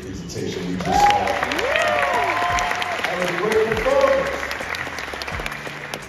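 Audience applauding, with a few shouted whoops rising and falling over the clapping about one to two seconds in. The clapping fades out shortly before the end.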